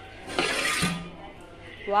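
Aluminium lid lifted off a cooking pot with a brief metallic clink and scrape about half a second in, as the finished biryani is uncovered.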